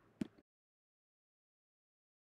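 Near silence: one short click right at the start, then the sound track drops out to dead digital silence.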